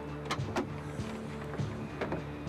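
Background music with steady sustained notes, over about three sharp clicks and knocks as a car's rear hatch is unlatched and lifted. The loudest knock comes about half a second in.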